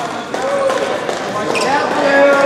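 A volleyball bouncing on a hardwood gym floor, a few sharp knocks, over spectators' voices in the echoing gym.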